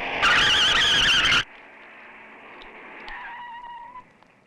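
Vehicle tyres squealing loudly with a wavering pitch for just over a second, then cut off sharply. A much quieter steady background follows, with a faint high tone near the end.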